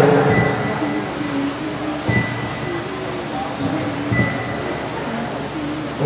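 Electric 1/10-scale RC touring cars running laps, their motors whining up and down in pitch as they accelerate and brake, over faint background voices.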